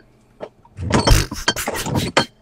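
Handling noise from a webcam being moved around inside a fridge: a single click, then a jumble of rustling and knocking with a low thump about a second in, as it bumps against things on the shelf.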